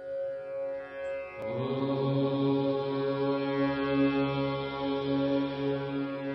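Meditative intro music: a singing bowl's steady ring carries on, and about a second and a half in a deep chanted 'Om' drone starts and is held.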